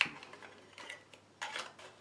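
Faint handling noises of a roll-film spool and its paper backing being tightened by hand: a light click at the start, then a few soft taps and rustles.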